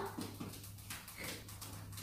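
Faint room noise with a low, steady hum, and a few soft indistinct sounds; a voice trails off right at the start.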